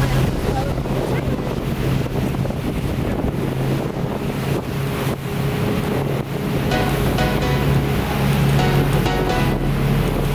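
Motorboat running at speed: a steady engine drone under rushing water and heavy wind buffeting on the microphone.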